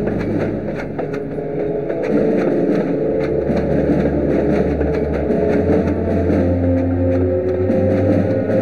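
Heavy military truck engine running as the truck drives close by, a low rumble that grows louder about two seconds in and changes pitch about three seconds in.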